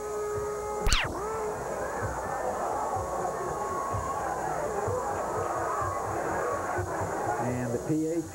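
A band playing a brass tune over a steady drum beat, about two beats a second, as celebration of a touchdown. A single sharp crack with a quick falling sweep about a second in.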